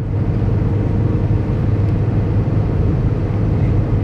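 Steady low rumble of a car's engine and tyres on the road, heard inside the cabin while driving.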